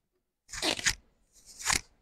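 Handling noise close to the lectern microphone: two short crackling rustles, about a second apart.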